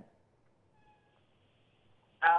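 Near silence, with one faint, brief pitched sound a little under a second in.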